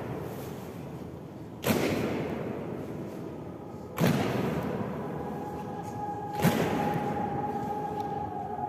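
Honour guard's boots striking the stone floor in unison in a slow ceremonial goose step, three strikes about two and a half seconds apart, each echoing long in the large round hall.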